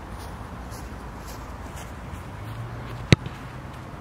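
A single sharp thud of a boot kicking an Australian rules football about three seconds in, over steady wind noise on the microphone.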